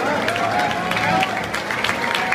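A football stadium crowd before kickoff: a steady mix of many voices with a few sharp clicks.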